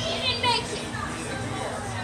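A child's high-pitched excited cry about half a second in, over background voices and music.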